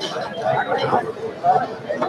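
Speech only: several people talking at once, their voices overlapping.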